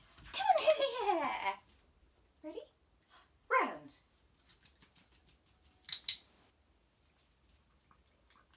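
A small dog vocalizing: a drawn-out, falling whine early on and a shorter falling one about three and a half seconds in, with a sharp click about six seconds in.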